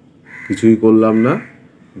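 A man's voice holding one drawn-out, wordless sound for about a second, falling slightly in pitch at the end.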